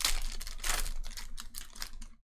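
Foil wrapper of a Panini Prizm football card pack crinkling and tearing as it is ripped open by hand: a dense run of small crackles.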